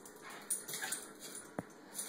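Boston terrier mix giving a short whimper while it chases, with scattered clicks of its claws on a tile floor and one sharp click about a second and a half in.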